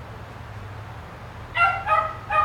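A dog giving two short, high-pitched yips about a second and a half in, one right after the other, over a steady low hum.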